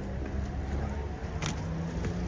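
Low steady hum of a car or nearby street traffic, with one sharp click about one and a half seconds in.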